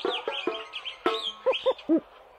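Cartoon monkey calls: high, squeaky chattering that gives way near the end to three short hoots, each rising and falling in pitch.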